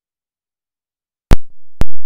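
Dead silence from a switched-off wireless microphone, then two loud sharp pops about half a second apart as the mic, fitted with fresh batteries, is switched back on and handled.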